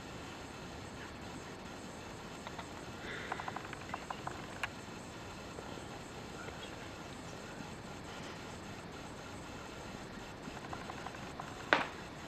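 Quiet room tone with a steady hiss. A few faint clicks come about three to four and a half seconds in, and one sharper click comes near the end.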